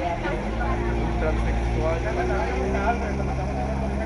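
Indistinct talk over a steady low mechanical hum.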